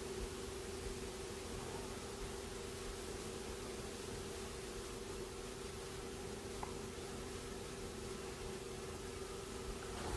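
Quiet room tone: a steady hiss with a low steady hum under it, and no distinct event.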